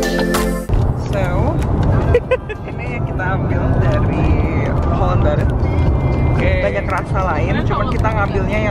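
Electronic music cuts off suddenly under a second in. It gives way to the steady low rumble of road noise inside a moving car, with people talking over it.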